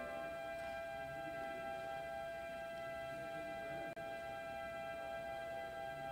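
Church organ holding one quiet sustained chord, its several notes steady and unchanging throughout.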